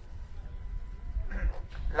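A brief pause in a man's speech, filled by a low steady background rumble. A faint vocal sound comes shortly before the speech resumes at the very end.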